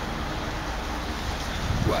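Steady outdoor background noise: a low rumble under an even hiss, with no distinct event.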